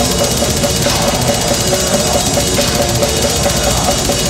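Death metal band playing live and loud: fast, dense drumming on a full kit with cymbals under distorted guitars.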